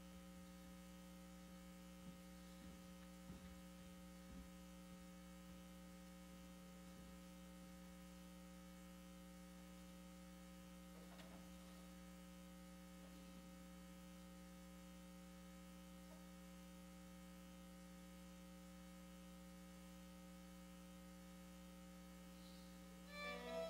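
Near silence with a steady electrical mains hum, plus a few faint knocks in the first few seconds.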